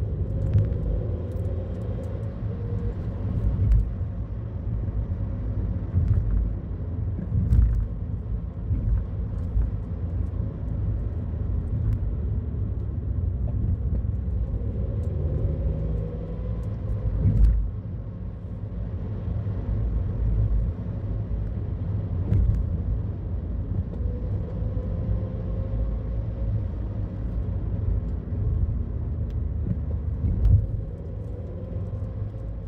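A car's engine and tyres rumbling low and steady, heard from inside the cabin while driving, with a few sharp knocks from bumps in the road, the loudest about seventeen seconds in.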